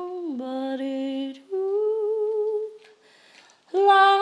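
A woman's solo voice singing a slow wordless melody, unaccompanied, with held, slightly wavering notes. The first note slides down about a third of a second in, a second note follows after a brief break, and after a pause of about a second a louder note comes in near the end.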